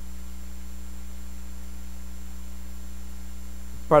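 Steady low electrical hum with a faint higher overtone, unchanging throughout, in a pause between spoken phrases.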